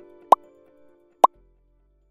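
Two short rising 'bloop' pop sound effects about a second apart, marking animated icons popping onto an end screen, over the fading tail of a short music jingle that dies away after the second pop.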